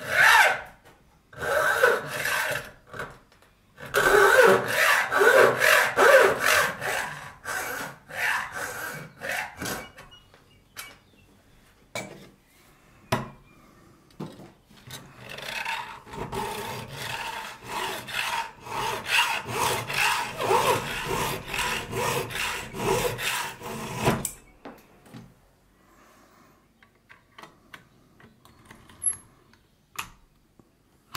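Hacksaw cutting into a brass key blank clamped at the bench edge, in runs of rough back-and-forth strokes. The sawing pauses for a few seconds midway and stops for good a few seconds before the end.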